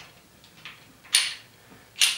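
Steel baby pin being worked in the collar of a C-stand grip head: faint scraping, then one sharp metallic clink with a brief high ring about halfway through, and another as it ends. This pin has no stopper end, so it slides straight through the knuckle.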